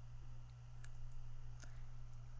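A few faint, short computer-mouse clicks over a steady low electrical hum.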